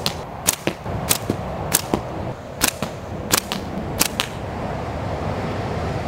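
Quick series of sharp snaps from a flat-band latex slingshot being shot at a target, about seven in the first four seconds, then they stop. A steady low traffic rumble runs underneath.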